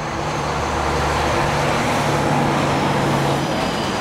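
A motor vehicle going past: a steady low engine hum with tyre hiss, louder than the talk around it, whose engine tone ends about three and a half seconds in.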